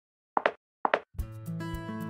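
Two short, quick pops about half a second apart, then intro music starting a little over a second in, with held tones and a low bass beat.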